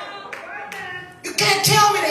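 Hand clapping, then a woman's voice over a microphone coming in loudly a little past the middle.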